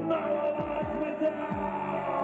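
Live dark post-punk band playing an instrumental passage: kick drum beats, each dropping in pitch, a few times a second, under sustained keyboard or guitar chords.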